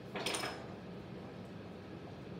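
A brief scrape of clay being shifted by hand on a pottery wheel's bat, a little after the start, over a faint steady hum.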